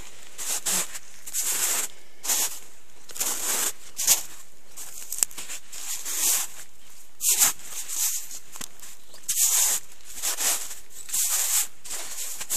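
Footsteps crunching through wet, thawing snow and dry grass: an irregular crunch about once or twice a second, with a couple of sharper clicks near the middle.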